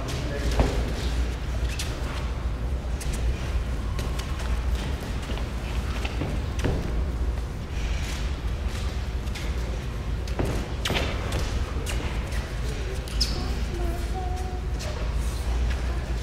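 Irregular thuds and knocks of a boxer's feet on the ring canvas during shadowboxing, over a low hum and background chatter in a large room.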